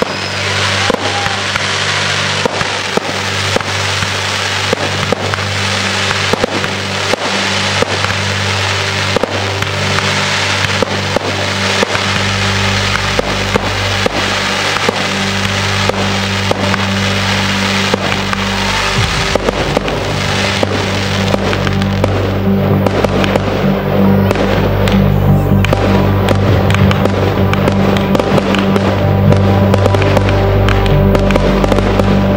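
Fireworks display: a steady run of sharp bangs and crackles from shells and comets, over a musical soundtrack of sustained low notes. A deeper bass joins about twelve seconds in, and the whole grows a little louder toward the end.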